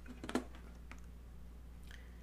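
A few light clicks and taps of steel hand pliers and glass being handled and set down on a work table, over a faint steady low hum.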